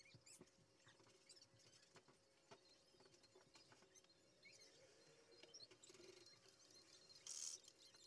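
Near silence: faint room tone with a low steady hum, scattered small faint ticks, and a short hiss near the end.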